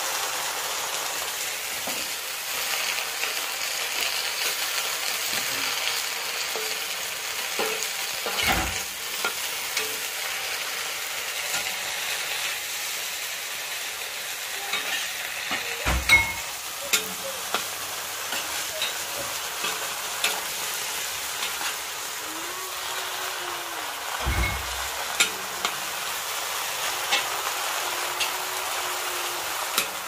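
Leafy greens sizzling as they stir-fry in a hot wok over a wood fire, with a metal spatula clicking and scraping against the wok as they are turned. A few dull knocks come at intervals of about eight seconds.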